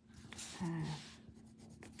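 Coloured pencil scratching across a paper tile as colour is shaded in, loudest in the first second.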